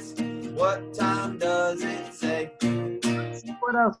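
Acoustic guitar strummed in a steady rhythm of ringing chords, a few strums a second, stopping just before the end.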